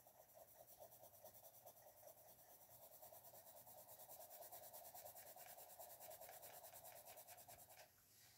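Faint scratching of a Crayola Colors of the World coloured pencil shading on paper, in quick, even back-and-forth strokes, a little louder in the second half.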